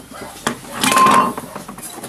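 A metal entry door clanking and rattling as it is opened, with a short metallic ringing note about a second in.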